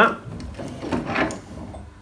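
Metal sharpening tools being handled on a wooden workbench: uneven rubbing and light knocks as a chisel and sharpening plate are moved.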